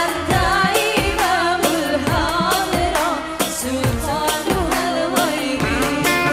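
Two women singing an Indonesian religious song (musik religi) with a live band of drums and electric guitar. The voices move in ornamented, wavering lines over a steady drum beat.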